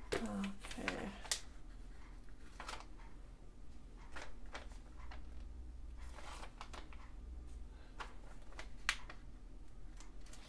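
Paper being handled on a tabletop: a burst of rustling at the start, then scattered soft rustles, scrapes and small clicks, with one sharper click near the end.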